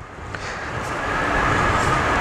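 A steady rushing noise with a faint whine in it, growing gradually louder.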